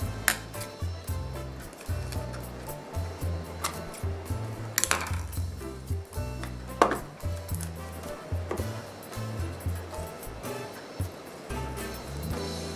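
Background music with a bouncing bass line that changes note every fraction of a second. A few sharp knocks sound over it, the loudest about five and seven seconds in.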